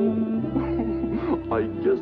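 A cartoon dog character's voice whimpering and sobbing in short cries that rise and fall in pitch, starting about half a second in, over a sustained low chord of orchestral soundtrack music.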